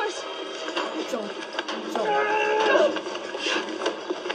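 Audio of a TV drama playing in the room: a long, drawn-out cry lasting almost a second, starting about two seconds in, among a few short knocks and shorter vocal glides.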